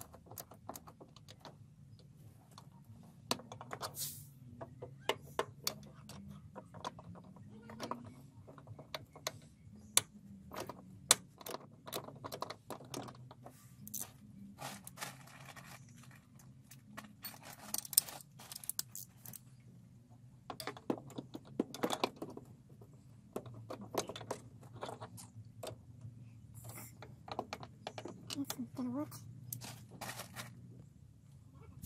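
Irregular metallic clicks and clinks of a wrench working on the clutch master cylinder fittings in a pickup's engine bay, over a faint low hum.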